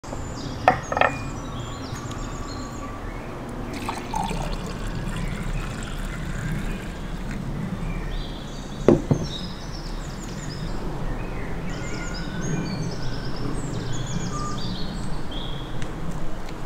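Red wine poured from a clay jug into a small glass, with a few sharp knocks of the jug and glass on the wooden table, near the start and about nine seconds in. Short high chirps sound on and off in the background.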